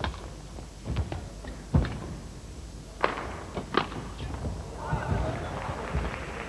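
Badminton rally: racket strings striking the shuttlecock and players' shoes thudding on the court, a series of sharp knocks roughly a second apart. A murmur of voices from the hall rises near the end.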